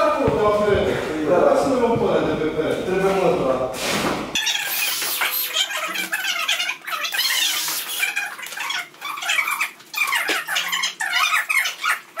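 A person's voice talking. About four seconds in, a cut to thin, high-pitched, squeaky chattering voices with no low end, the sound of sped-up talk.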